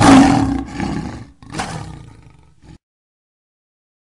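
Lion roaring: two long roars, the first the louder, then the sound cuts off a little under three seconds in.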